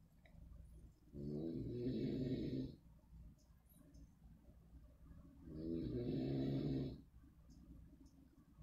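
A man's voice making two drawn-out, low hums or held 'hmm' sounds, about a second and a half each, with a pause between them.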